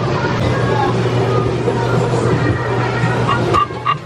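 Small engine of an antique-style track-ride car running steadily, heard from the car's back seat, with voices faintly in the background. The engine hum drops away near the end.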